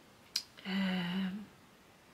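A woman's drawn-out hesitation sound, 'uh', held on one steady pitch for under a second, with a short sharp click just before it.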